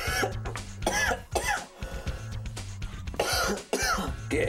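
Background music with a steady low bass line, over which a voice makes short wordless sounds, several sliding down in pitch, about a second in and again near the end.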